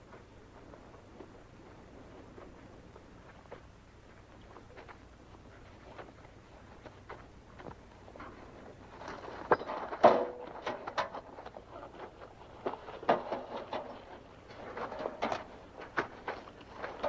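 Scattered knocks, scuffs and clatter of people handling gear and moving about. These are faint at first and grow louder and busier from about nine seconds in, with a sharp knock near ten seconds.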